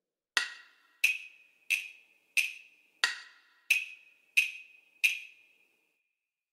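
Metronome with a wood-block click, ticking eight even beats about one and a half per second, with the first and fifth beats accented. It is a two-bar count-in of four beats to the bar that sets the tempo before the dictation is played.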